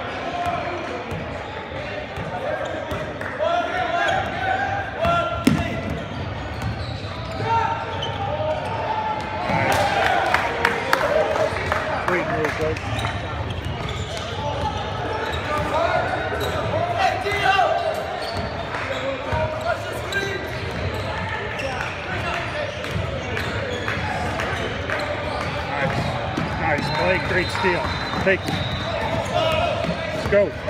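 A basketball bouncing repeatedly on a gym floor during play, under voices calling out around the court, with the echo of a large hall.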